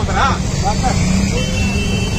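Steady low rumble of road traffic, with men's voices talking over it in the first second. A thin high steady tone comes in near the end.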